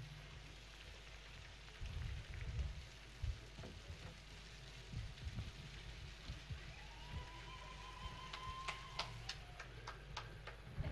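Faint background noise picked up by an open handheld microphone, with scattered low thumps and clicks. Near the end a faint thin tone rises slightly and then holds for about two seconds.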